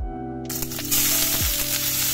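Diced food sizzling in a hot pan: a loud hiss that starts about half a second in, over background music with a beat.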